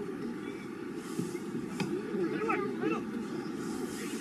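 Ambience at a football match: distant voices calling out across the pitch over a steady low rumble, with a short sharp click near the middle.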